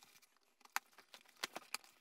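A few faint ticks and light scrapes from a cardboard shipping box as its packing tape is slit and the flaps are pulled open: one click a little before the middle, then three in quick succession about a second and a half in.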